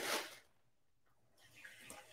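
Kitchen tap water splashing briefly as a metal cocktail jigger is rinsed under the faucet, then fainter water noise returning near the end.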